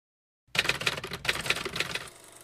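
A rapid run of sharp mechanical clicks, like typewriter keys clattering, starting about half a second in. The clatter comes in two runs with a brief pause about a second in.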